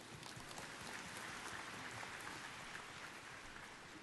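Faint applause from a large congregation, swelling over the first couple of seconds and then thinning out.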